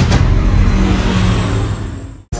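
Engine sound of a passing light aircraft, loud and falling slightly in pitch as it fades out near the end.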